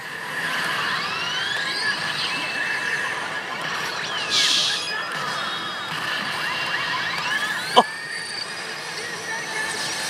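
A Saint Seiya pachislot machine playing its battle-sequence effects through its speakers: music under sweeping, rising synthesized effect tones, a short burst of noise about four seconds in, and one sharp hit near eight seconds.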